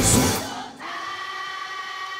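Rock band playing with drums and bass cuts out about half a second in. It leaves a large concert crowd singing along together unaccompanied, holding long notes.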